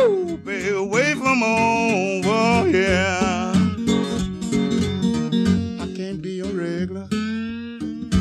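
Acoustic blues song on acoustic guitar, with bending, sliding melody notes over a steady bass line, in a break between sung verses.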